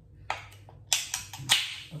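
Ring-pull tab of an aluminium soda can clicking as a finger works at it, then the can popping open with a short fizzing hiss about one and a half seconds in.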